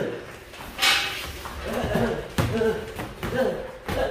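Boxing gloves landing a few sharp blows during sparring, about three distinct hits, with a man's voice calling out over them.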